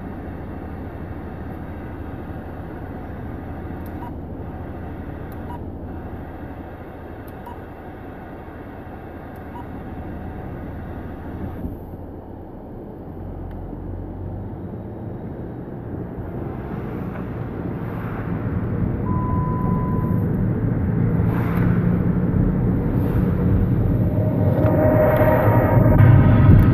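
Road and engine noise inside a moving car's cabin, a steady low rumble that grows louder over the last several seconds.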